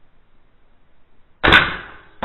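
Double-barrel Nerf dart pistol firing once, about one and a half seconds in: a single sharp shot that fades over about half a second.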